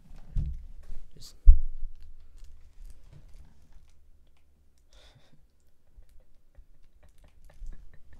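Handling noise from a plush toy being pressed against the camera: soft thumps and rustling, with one sharp loud thump about a second and a half in, then faint scattered clicks and rustles.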